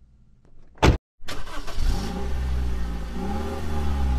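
A car door shuts with a single sharp knock, and just after it a car engine starts abruptly and keeps running with a low rumble, its pitch rising and falling as it revs gently.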